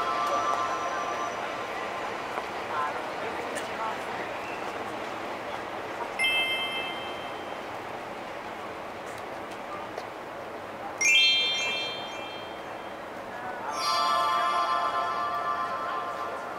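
Bell-like chime tones ring in short flourishes: a brief chime about six seconds in, a quick rising run of chimes around eleven seconds, and a longer ringing cluster near the end. People chatter throughout.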